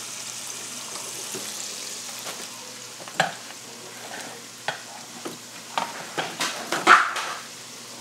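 Pork chops frying in hot oil with a steady sizzle. Several sharp knocks and clatters in the second half, the loudest about a second before the end.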